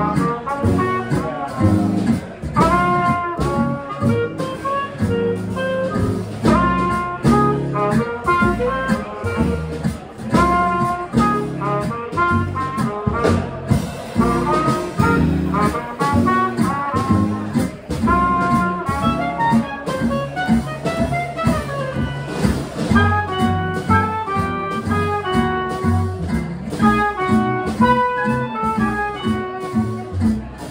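Small jazz band playing live: clarinet and trumpet carrying the melody over acoustic guitar, upright bass and drums.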